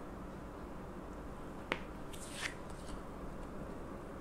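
Quiet handling of a small pouch holding a silver bar as it is set down on a table among plastic-cased bullion: one sharp click a little before halfway, then a few soft rustles.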